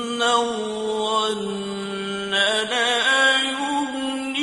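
A male Quran reciter's voice chanting in the drawn-out, ornamented mujawwad style. He holds one long melodic note that steps lower in pitch about one and a half seconds in, with quick wavering ornaments near the start and again between about two and three seconds in.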